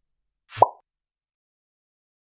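A single short plop sound effect about half a second in: a brief click with a quick falling blip.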